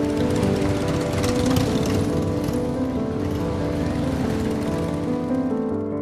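Several motorcycle engines running together, a dense rattling engine noise that stops just before the end, over soft background music.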